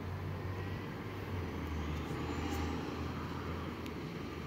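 Transit bus engine running with a steady low drone as the bus pulls out and drives across the lot, with a faint whine rising in pitch over the first few seconds.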